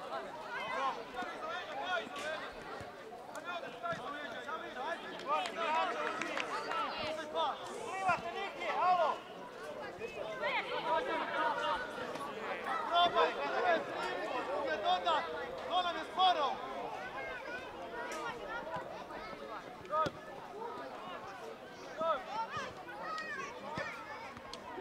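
Players and onlookers shouting and calling out across an outdoor football pitch, overlapping and indistinct, with a few short knocks here and there.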